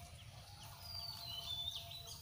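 Birds calling, with thin high whistles and short chirps that grow stronger in the second half, over a low steady rumble.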